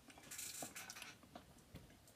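Near silence: room tone with a few faint clicks and a soft rustle.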